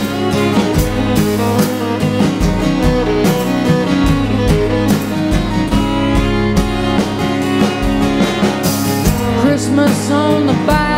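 Live acoustic country-folk band playing an instrumental passage: strummed acoustic guitar, bowed fiddle and a drum kit keeping a steady beat.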